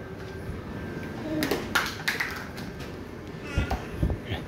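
A few sharp taps and clicks about a second and a half in, then a brief high baby vocal sound near the end.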